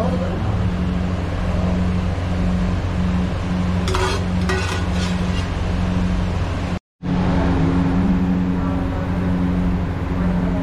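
A steady low machine hum, with a pulsing drone, fills a kitchen. A few sharp metal clinks of a serving ladle against a pan come about four to five seconds in, and the sound cuts out for a moment near seven seconds.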